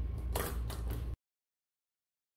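A few short, sharp clicks over a steady low hum, then the sound cuts off abruptly into dead silence a little over a second in.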